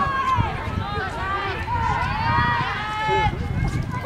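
Several high-pitched voices shouting and calling out at once, overlapping and unintelligible, over a low rumble.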